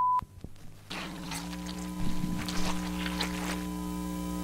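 A steady high beep tone cuts off right at the start, followed by a few clicks. From about a second in, a steady electrical buzzing hum with several held tones sets in, with faint crackle over it, like the hum of an old tape recording.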